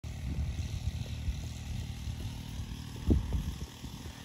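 Loaded wheelbarrow rolling up an asphalt driveway, a low rumble with irregular rattles and knocks from its wheel and tray, and one louder knock about three seconds in.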